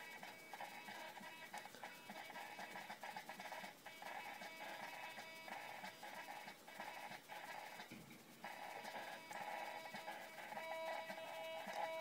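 Turnigy hobby servo running on 6.6 V, its motor giving a faint high-pitched whine as it fights to hold centre while its output is pushed back and forth by hand. The whine comes and goes with the pushing and drops out briefly about eight seconds in.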